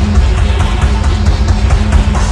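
Live grunge band playing loud with no singing: distorted electric guitar, bass and drum kit, heard through a soundboard recording.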